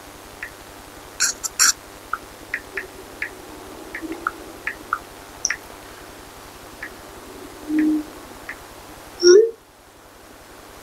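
Long acrylic nails tapping on a smartphone screen while typing: light, irregular clicks, two of them louder a little over a second in. Two brief low hums come near the end, the second the loudest sound here.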